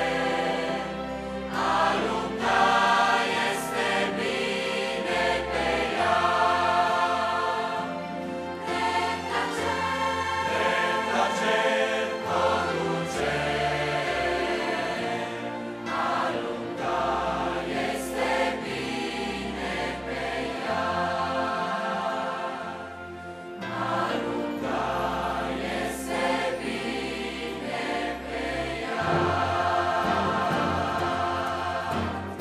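A large mixed youth choir singing a hymn in sustained, chord-by-chord phrases over a steady instrumental bass accompaniment.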